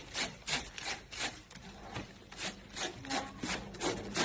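A head of napa cabbage is rubbed up and down a wooden hand grater, and the metal blade shreds the leaves. Each stroke is a short rasping scrape, about three a second and a little uneven.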